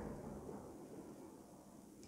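Near silence: faint room tone, fading slightly.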